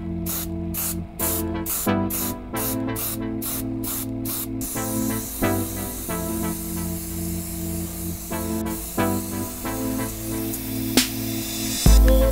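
Airbrush spraying paint: a steady hiss that starts about four and a half seconds in and runs under background music with a beat.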